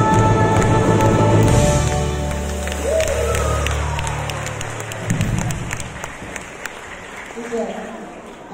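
Live band music ending: the playing stops about two seconds in and a held final chord dies away over the next three seconds, while the audience claps and applauds, the clapping thinning out toward the end.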